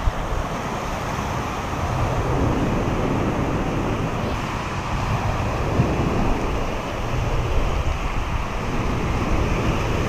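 Small ocean waves breaking and washing over the sand at the water's edge, a steady rushing noise, with wind rumbling on the microphone.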